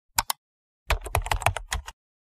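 Two quick clicks, then rapid typing on a computer keyboard for about a second.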